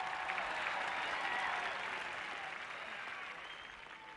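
Large audience clapping and applauding, loudest in the first couple of seconds and slowly dying away toward the end.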